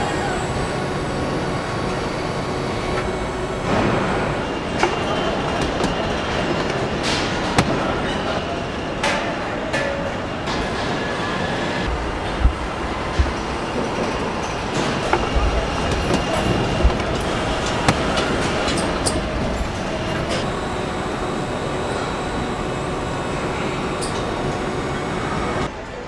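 Car assembly-line machinery running: a steady mechanical din with frequent sharp metallic clanks and clicks from the automated fixtures and robots.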